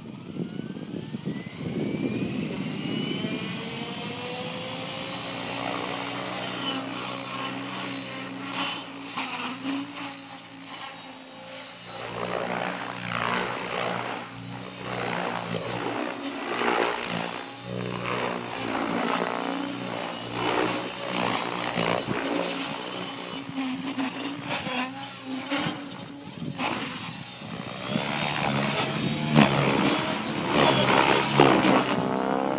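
Electric 700-size RC helicopter (Rave Ballistic with a Scorpion HK 4525 motor and Spinblade 700 mm main blades): the motor whine rises in pitch over the first few seconds, then holds steady. From about twelve seconds in, the rotor blades chop and surge in rapid pulses as it flies 3D aerobatics.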